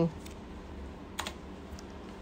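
A computer keyboard key clicks sharply once just over a second in, then a fainter click comes near the end, over a low steady hum.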